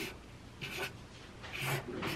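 A pen drawing on a sheet of paper on a tabletop: two short scratchy strokes, about half a second in and again near the end.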